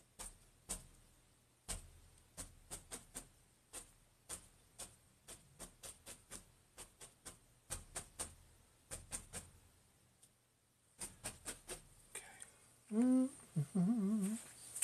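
Paintbrush dabbing oil paint onto a stretched canvas: irregular soft taps, several a second, with a short lull before the end. Near the end a man hums briefly.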